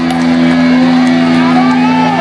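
Live rock band holding a sustained electric guitar chord that rings steadily, loud, with shouts and whoops from the crowd over it.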